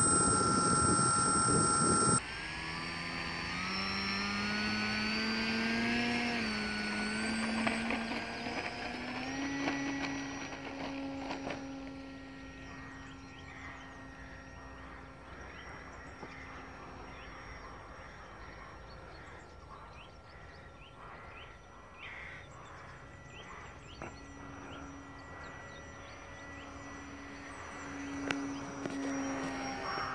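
Motor and propeller of an RC Tiger Moth model. It gives a loud, steady whine close up for about two seconds, then is heard from a distance with its pitch rising for several seconds, settling into a steady, fainter drone. The drone fades out and comes back near the end as the plane flies around.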